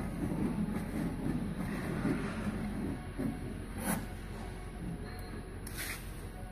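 Hand-cranked window regulator in a 1967 Ford Mustang door running the glass, a steady low mechanical grinding from the regulator gears and tracks, freshly lubed and working. Two sharp clicks, about four seconds in and near the end.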